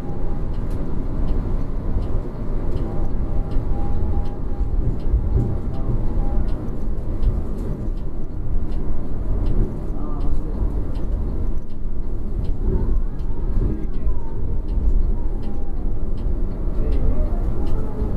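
Yutong coach driving on the road, heard from inside the driver's cab: a steady low engine and road rumble, with a light ticking about twice a second over it.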